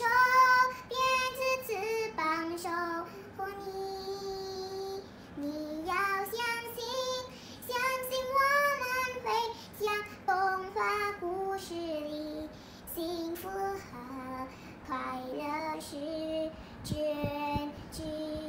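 A young girl singing a Mandarin pop ballad in a child's voice, phrase after phrase, holding several notes for a second or more.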